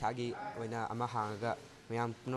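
Speech only: a young man talking to a reporter in short phrases.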